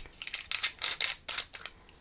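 A metal screw cap being unscrewed from a glass ink bottle: a quick run of short grating clicks over about a second and a half.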